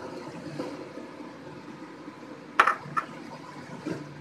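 Curry broth simmering in a wok, a steady bubbling hiss, with a sharp knock about two and a half seconds in and a smaller one just after.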